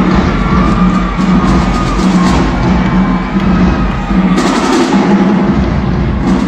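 Marching band playing loudly in an arena, with held brass notes over a steady pounding of drums as the band marches onto the floor.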